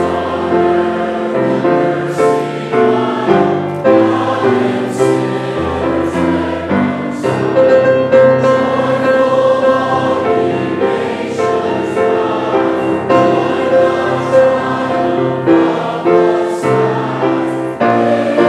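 A congregation singing a hymn together with many voices, accompanied by a keyboard playing sustained bass notes.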